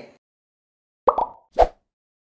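Two short pop sound effects about half a second apart over dead silence, the first a little longer with a brief ringing tone, as graphics pop onto an animated title card.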